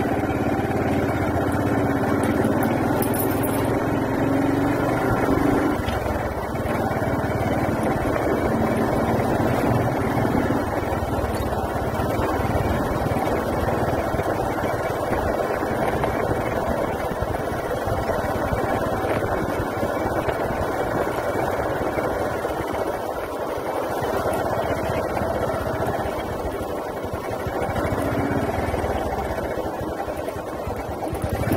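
Two-wheeler's engine running steadily while riding, with road and wind noise from the moving ride.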